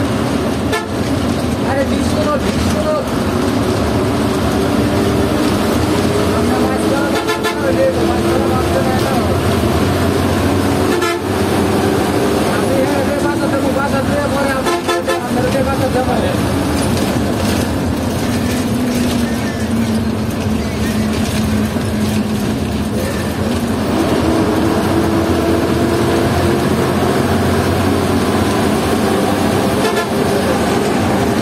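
A bus engine and road noise heard from inside the cabin while driving. The engine pitch falls and rises with speed, and horns honk several times.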